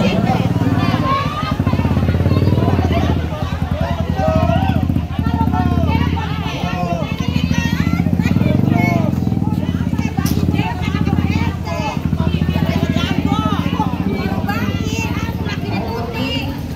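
A motorcycle engine running close by with a steady low pulsing note, under the loud chatter and calls of a crowd of people.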